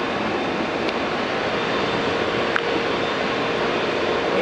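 A boat's engine running in a steady drone, with a few faint clicks.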